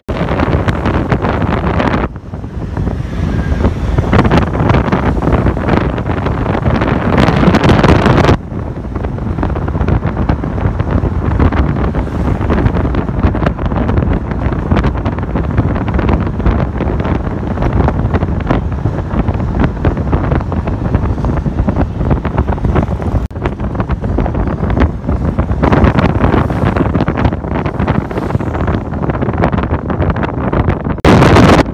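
Heavy wind buffeting the microphone of a camera moving along a road: a dense low rumble that gusts and surges. It dips suddenly about two seconds in and again about eight seconds in.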